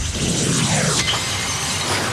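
Television bumper sound effect: a sudden crash like shattering glass that falls away in a downward whoosh, marking the show's transition to its commercial break.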